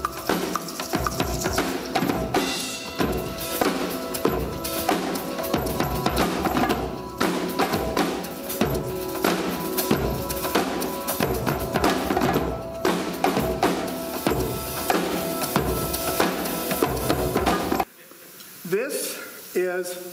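Acoustic drum kit played live in a busy groove, with steady kick, snare and tom hits under washing cymbals. It cuts off abruptly near the end, and a man starts speaking.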